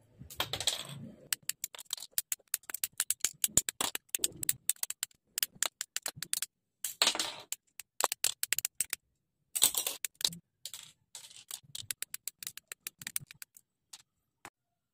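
Hobby nippers cutting plastic model-kit parts off their runners: a long, irregular run of sharp plastic snips and clicks, with a few slightly longer rattles of the runner being handled in between.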